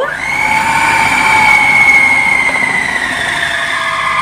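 Electric food processor motor running with a loud whine that climbs quickly at switch-on, then holds steady and sags slightly in pitch, as it blends ground almonds, icing sugar, egg whites and dates into a paste.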